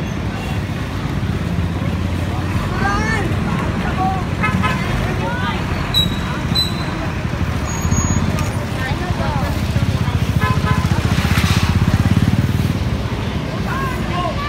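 Street traffic with a small motorcycle engine running close by, its low pulsing louder in the second half. Two short high beeps come about six seconds in, over scattered voices.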